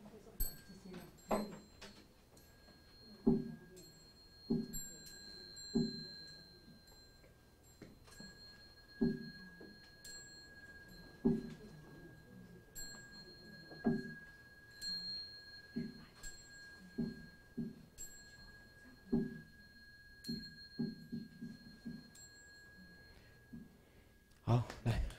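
Buddhist dharma drum struck in slow, uneven single strokes that come closer together near the end. Under the strokes, a struck bowl bell keeps up a steady, high ringing.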